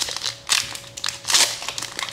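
Foil wrapper of a Pokémon trading card booster pack crinkling in several short bursts as it is opened by hand.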